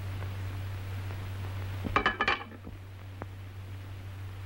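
Knife and fork clinking against a china plate: a quick cluster of sharp clinks about halfway through, then one faint click, over a steady low hum.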